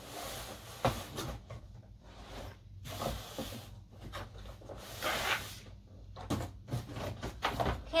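Cardboard box being opened and handled by hand: rustling and scraping of the cardboard, with a few sharp knocks, the first about a second in.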